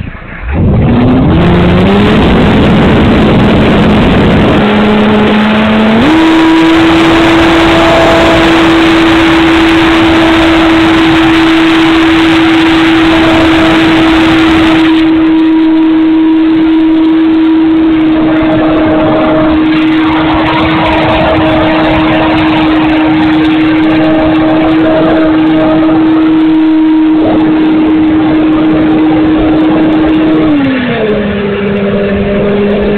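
Onboard sound of an E-flite Pitts S-1S 850mm electric RC biplane's brushless motor and propeller, running on a 4S battery. The whine climbs in pitch in steps over the first six seconds, then holds one steady note, under heavy wind rush over the onboard camera.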